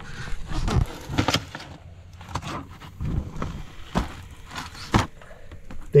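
Irregular scraping and rustling in dirt and loose stones inside a rock-pile burrow, broken by a few sharp clicks.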